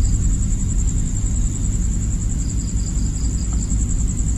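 Crickets trilling steadily in a fast high pulsing chirp, with a second, lower run of chirps about two and a half seconds in, over a continuous low rumble.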